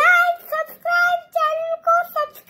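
A young child singing in a high voice, a run of short notes held on fairly steady pitches one after another.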